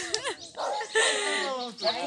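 People's voices talking, with a longer drawn-out, falling voice in the middle.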